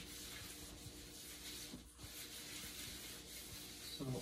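Fingertips rubbing olive oil and dried seasonings around a metal cookie sheet: a faint, steady rubbing with a brief pause about two seconds in.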